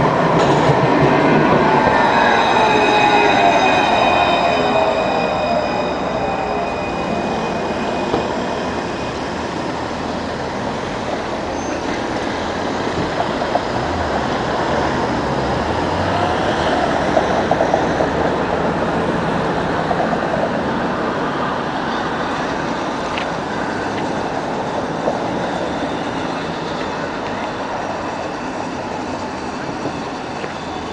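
A Luas Alstom Citadis light-rail tram passes close by. Its running noise is loudest at first and comes with several high, steady whining tones, and it fades over the first several seconds as the tram moves away. After that a lower, steady tram and street rumble carries on, with a few light clicks.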